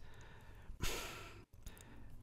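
A man's breath into a close microphone: one soft sigh-like exhale about a second in, with quiet room tone around it.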